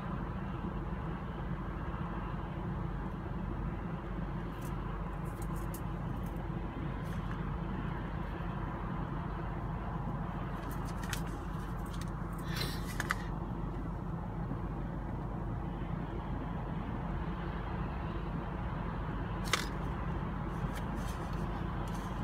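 Steady road and engine drone inside a car cruising on a highway, with a few faint, brief ticks here and there.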